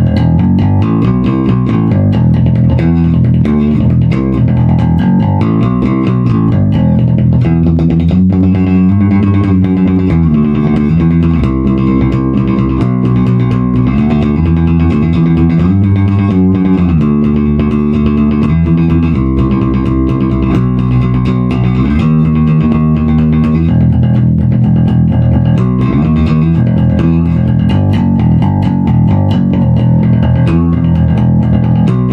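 Gamma Jazz Bass with EMG XJ pickups, played hard with a pick through a Bergantino HDN410 cabinet: a continuous run of punchy low notes with a deep, dark tone.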